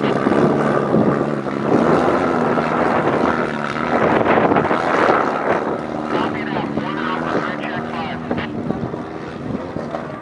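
Off-road race buggy's engine running hard under load as it pulls away through deep sand, its pitch rising and falling with the throttle. It grows gradually fainter over the second half as the car climbs away.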